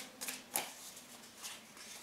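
Tarot deck handled and shuffled by hand: soft rustling of cards with a few light, sharp card taps, the clearest about half a second in.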